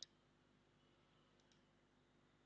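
Near silence with faint computer mouse clicks: one right at the start, then two quick clicks close together about a second and a half in.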